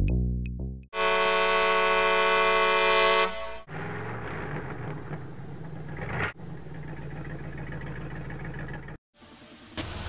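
Intro music and sound effects: a short falling electronic figure, then a loud, steady, horn-like blast held for about two and a half seconds, followed by quieter music that breaks off shortly before the end.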